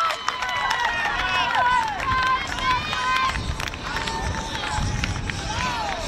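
Players and a small sideline crowd shouting and cheering after a goal in women's football: many short, high-pitched excited calls overlapping.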